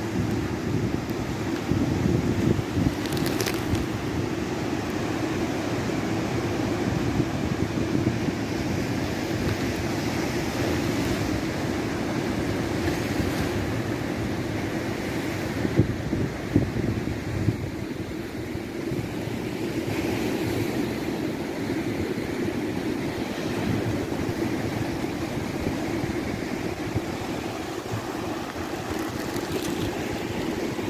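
Rough sea surf breaking on shoreline rocks, a steady rushing wash, with wind rumbling on the microphone. A few brief knocks come about halfway through.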